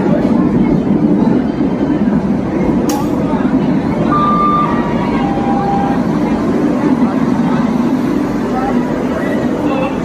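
Indian Railways WAP-7 electric locomotive and its coaches rolling slowly past along a platform, a steady low rumble of wheels and running gear.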